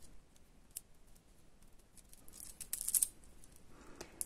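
Faint clicking and light scratching of small faceted plastic beads knocking together as they are picked up on a needle and the woven beadwork is handled, busiest about two and a half to three seconds in.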